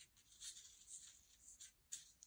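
Faint paper rustling and sliding as a tear-off memo-pad sheet is handled and laid on a diary page, with a sharper papery tick near the end.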